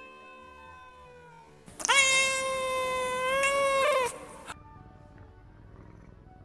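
Lynx point (tabby point) Siamese cat giving one long, drawn-out meow of about two seconds, starting about two seconds in, holding a steady pitch and dropping at the end.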